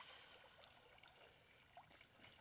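Near silence, with faint small water sounds from the river as a golden retriever swims across it.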